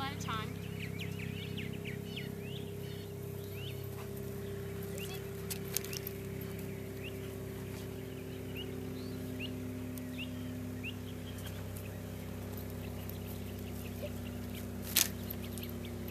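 Steady low hum with scattered short, high chirps throughout, and one sharp click about a second before the end.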